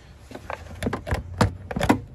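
Hard plastic air box being wrenched loose and pulled out of a small motorcycle's frame: a run of knocks and clattering scrapes of plastic against the frame, the loudest near the end.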